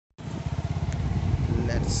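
Motorcycle engine running at low speed, a steady low pulsing beat from its firing strokes, with wind and road noise over it.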